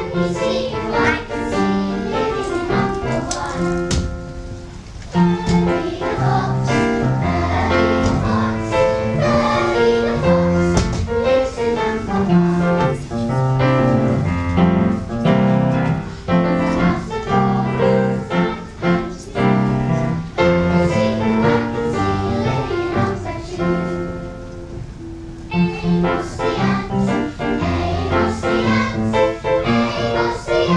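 Live music: a group of children singing a song to keyboard accompaniment, held notes moving in a steady rhythm. The music briefly drops away twice, about four seconds in and again near the end.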